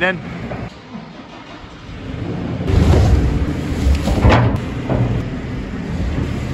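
JCB telehandler's diesel engine running, getting much louder about halfway through as the machine works its bucket to tip a load of farmyard dung into a trailer.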